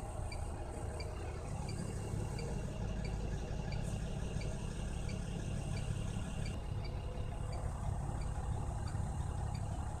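Semi-truck engine idling steadily, heard from inside the cab, with a faint regular ticking about twice a second.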